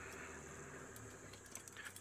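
Faint, steady low hum of an open safari vehicle driving slowly off-road over rough ground, with a few faint light rattles.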